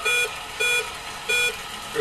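Game-show Big Wheel beeping as it turns, three short electronic beeps coming further apart as the wheel slows to a stop.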